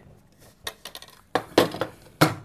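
Metal Dixie mess tins clinking and knocking as the nested pair is pulled apart and set down on a tabletop: a few light clinks, the sharpest about a second and a half in.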